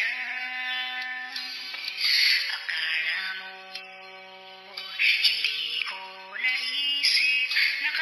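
Autotuned solo voice singing a Tagalog love song over a minus-one backing track, with long held notes.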